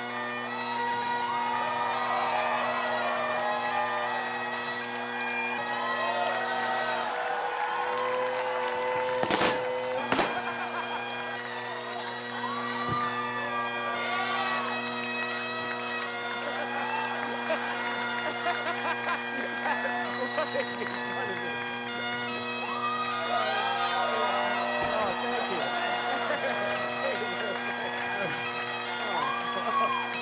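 Great Highland bagpipes playing a tune over their steady drones, with two brief sharp bursts of noise about nine and ten seconds in.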